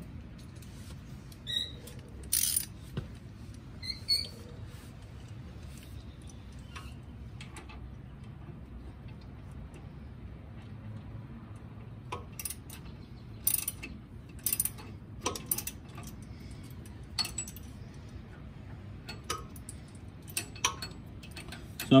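Intermittent clicks and metal clinks of a socket ratchet snugging the nuts onto the carriage bolts that clamp an air-spring bracket to a truck's leaf-spring pack, with a few quick runs of ratchet ticks near the start and a cluster of clicks midway.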